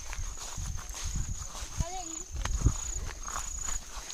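Footsteps along a grassy field path, brushing through undergrowth and dry stalks, as uneven low thuds and rustling. A thin, steady high-pitched whine sits behind them, and a short hummed voice sound comes about two seconds in.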